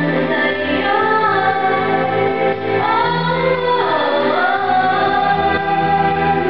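A woman singing live into a handheld microphone, amplified, over steady instrumental backing music. Her sung line glides up and down in pitch.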